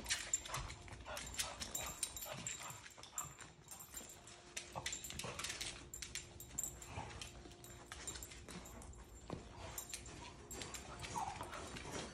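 Dog's claws clicking irregularly on a hard wood-look floor as it walks about searching, faint throughout.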